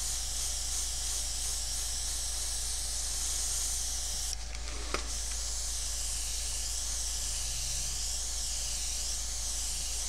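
Airbrush spraying paint in a steady hiss. The spray stops for about half a second around four and a half seconds in, and a sharp click comes as it starts again.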